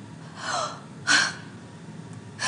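A woman's two short breaths of exasperation: a soft sigh falling in pitch about half a second in, then a sharper huff just after a second.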